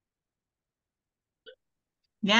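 Near silence on the call line, broken by one very short vocal sound about one and a half seconds in.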